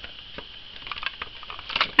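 Small plastic toy figures and a plastic playset being handled: light scattered clicks and taps, with a quick cluster of clicks near the end, as figures are fitted onto the playset's swing.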